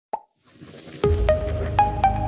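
Logo intro music: a short pop, a rising swish, then a deep bass hit about a second in, followed by a few separate ringing notes about half a second apart over a held bass.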